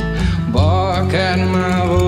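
Country-style song with acoustic guitar accompaniment; about half a second in, a lead melody line comes in, sliding and wavering in pitch.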